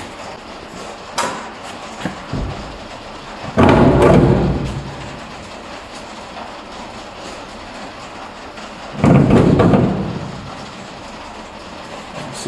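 Metal clunking and rattling as a brake booster and master cylinder are pushed and shifted against a truck cab's sheet-metal firewall for a mock-up fit. There are a few light knocks early on, then two loud clattering stretches of about a second each, about four seconds in and again about nine seconds in.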